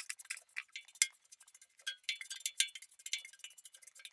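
Ash and small bits of charcoal brushed out of an offset smoker's firebox, pattering into a galvanized metal bucket as a rapid scatter of light, high ticks, with one sharper hit at the start.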